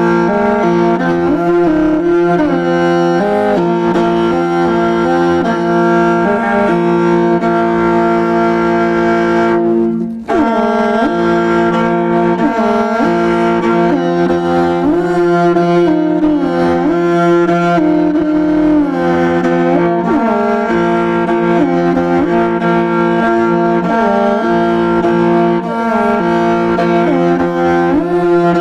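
Morin khuur (Mongolian horse-head fiddle) played with the bow: a sustained low drone under a melody with sliding ornaments, with a brief break about ten seconds in.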